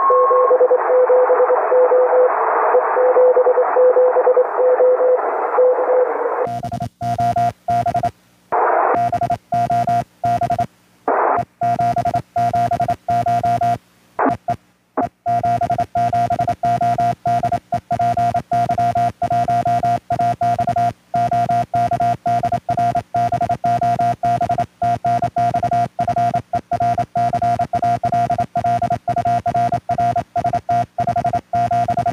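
Amateur radio transceiver in CW mode. At first, receiver hiss carries a faint Morse code signal keyed on a low tone. About six seconds in, the hiss cuts off and a louder, higher-pitched Morse sidetone takes over, keyed on and off with sharp clicks, as the station sends Morse code, with brief snatches of receiver hiss between.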